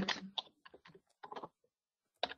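Computer keyboard typing: a quick run of keystrokes for about a second and a half, then it stops.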